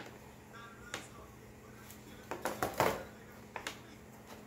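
Hands handling a plastic toy quadcopter and its parts in the packaging tray: scattered plastic clicks and rattles, with a quick cluster of clicks and rustling a little under three seconds in.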